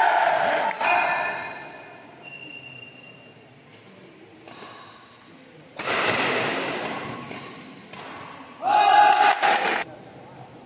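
Shouts and cheers from players and spectators at a badminton match in a large hall. There is a burst at the start, a sudden loud outburst about six seconds in that dies away slowly, and a shout near the end. In the quieter stretches between, there are faint knocks of racket hits on the shuttlecock and footsteps on the court.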